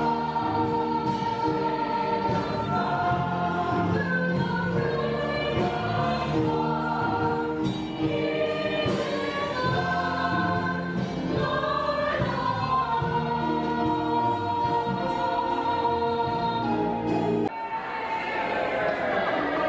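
Church choir singing together in sustained, shifting notes, then cutting off abruptly near the end.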